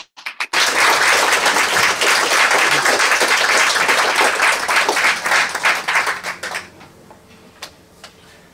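Audience applauding, starting suddenly about half a second in and dying away over the last second or two, with a last stray clap near the end.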